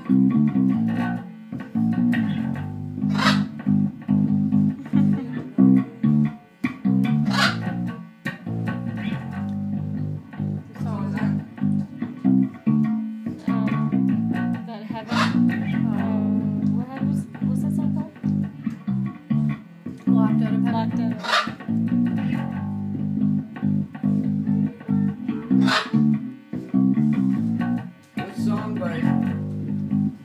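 Electric bass guitar playing a repeating low riff, with a few brief sharp high sounds over it.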